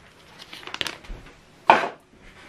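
Handling noise from a black printer cable being unplugged and lifted away: light clicks and rustles, then one short, louder burst of noise a little before the end.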